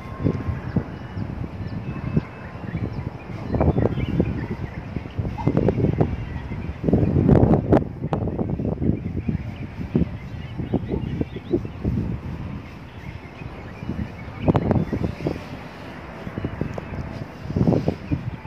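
Wind rumbling on the phone's microphone in irregular gusts, loudest about seven to eight seconds in.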